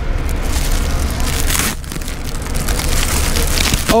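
Plastic packaging crinkling and rustling as it is handled close to the microphone, over a steady low rumble, with a brief lull a little under two seconds in.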